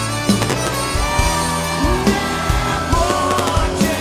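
Live band and symphony orchestra playing an instrumental passage, a trumpet carrying the melody with some sliding notes over a steady drum beat and bass.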